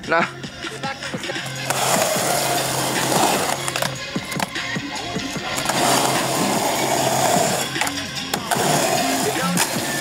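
Skateboard wheels rolling on concrete, a steady rushing sound from about two seconds in that fades near the end, with background music underneath.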